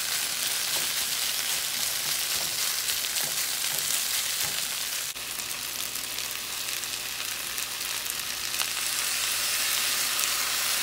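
Rice and chicken frying in a hot pan with a steady sizzle while a spoon stirs and chops the rice. The sound breaks off abruptly about five seconds in and the sizzle carries on.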